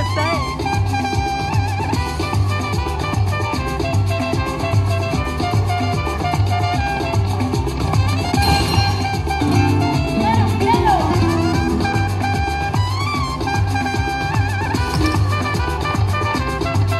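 Chica Bonita slot machine playing its Latin-style free-games bonus music with a steady beat while the reels spin.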